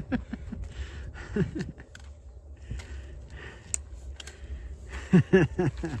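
Trekking pole tips and boots clicking and scuffing on granite steps as a hiker climbs, then laughter near the end.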